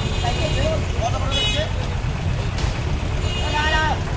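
Street noise at a roadside gathering: a steady low rumble with faint voices, a brief high-pitched tone about one and a half seconds in, and a louder voice calling out near the end.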